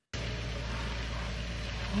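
Steady low rumble and hiss of outdoor background noise on a home video's camcorder soundtrack, cutting in abruptly as the clip starts, like a vehicle idling with wind on the microphone.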